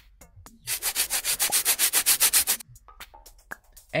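Pencil-scribbling sound effect: a quick run of scratchy pencil strokes on paper, about seven a second, lasting about two seconds from just under a second in.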